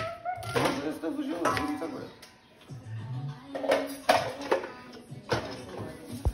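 Voices talking over background music, with a few sharp knocks in between.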